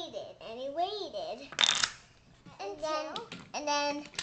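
A young child's voice making sounds without clear words, with a short hiss about a second and a half in, then a held voiced tone near the end.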